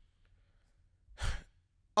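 A man sighs once, a short breathy exhale about a second in.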